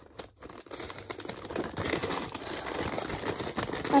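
A brown paper bag crinkling and rustling in the hands as it is handled. It starts about a second in and goes on as a dense crackle.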